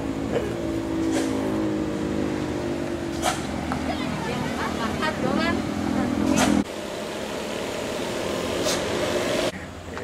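A vehicle engine running with a steady hum, with passing road traffic around it. The sound changes abruptly about two-thirds of the way through and again near the end, and a few brief voices come over it.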